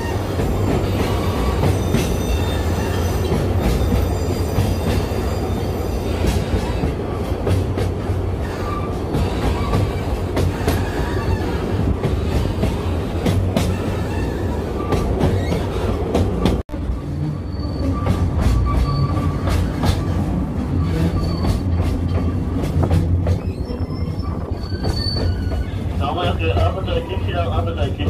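Ikawa Line narrow-gauge passenger car running on the rails, heard from inside: a steady rumble of wheels and running gear, with thin intermittent wheel squeals and scattered rail clicks. The sound cuts out for an instant about two-thirds of the way through.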